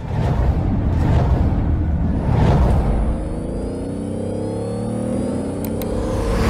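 Car engine sound effect: a heavy rumble with swooshes, then the engine revving up in a steady rising pitch over the last three seconds.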